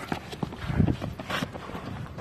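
Scattered knocks and footfalls on pavement from sparring trainees, with a short low grunt-like voice sound about three quarters of a second in.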